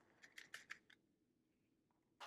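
Faint light clicks, about five in the first second, from small clear plastic diamond-painting drill containers being handled, then near silence.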